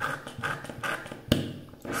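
Pump dispenser of a Naobay foaming facial cleanser being pressed a few times, each stroke a short sharp click, the loudest about two-thirds of the way through, as foam is dispensed into the hands.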